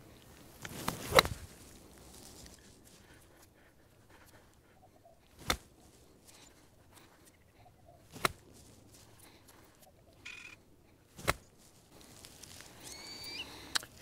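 Four sharp clicks of a golf iron striking balls out of bunker sand, a few seconds apart, the first with a short swoosh of the swing and sand just before it; the shots are struck ball first. A faint bird chirp sounds near the end.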